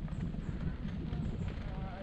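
Steady rumble with irregular knocking from a camera travelling over a rough dirt track, jostled by the bumps.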